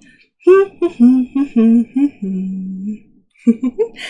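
A woman humming a short wordless tune: a run of notes stepping down in pitch and ending on a long held low note.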